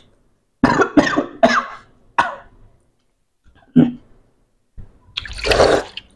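A person coughing: a quick series of about four coughs in the first couple of seconds, a single cough later, and a longer bout near the end.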